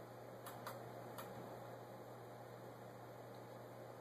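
Quiet room tone: a low steady hum, with three faint light clicks in the first second or so.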